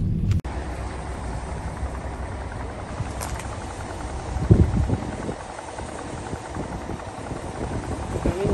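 Car cabin rumble from the engine and road that cuts off abruptly half a second in, giving way to steady outdoor background noise with a low rumble. A brief low sound stands out about four and a half seconds in.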